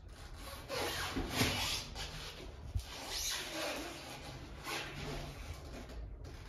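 Hand rubbing and scraping at a door frame in several long strokes, the strongest about a second and a half in, with one sharp click near the middle.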